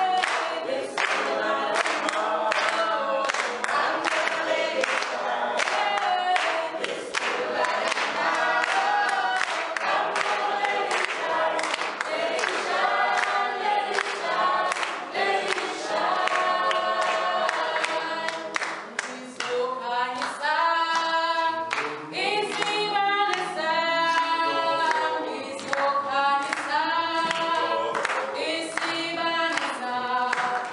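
A small mixed group of men and women singing a cappella in harmony, with hand-clapping keeping a steady beat for most of the song.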